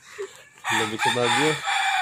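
A rooster crowing once, starting about half a second in and lasting about a second and a half, ending on a falling note, with a person laughing under its first part.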